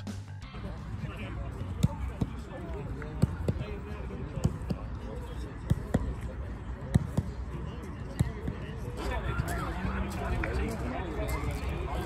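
Footballs being kicked during a team warm-up: short sharp thuds every second or so over a steady outdoor background with distant voices, and nearer chatter coming in near the end.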